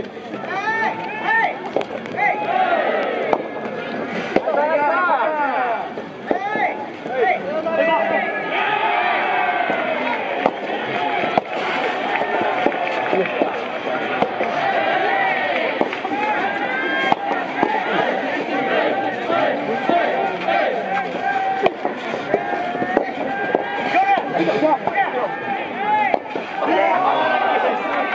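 Many voices shouting and calling over one another without a break, with sharp pops of rackets striking a soft tennis ball scattered through the rally.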